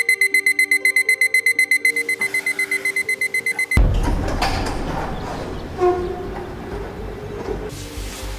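Digital alarm clock beeping rapidly, about eight high beeps a second, over soft music. The beeping cuts off at about four seconds and a sudden loud rumble takes over, fading slowly.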